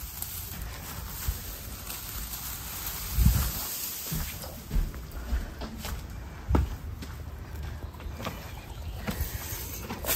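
Footsteps and the handling of hay while a person fetches alfalfa and carries it out, with scattered knocks and two dull thumps, about three seconds in and again past six seconds.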